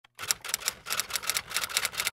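Rapid typing on a keyboard: a fast, uneven run of sharp key clicks, about seven a second, that stops abruptly at the end.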